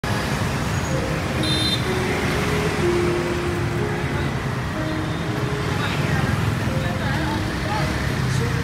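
Busy street at night: steady motorbike and road traffic noise with indistinct chatter, and a simple melody of short held notes over it.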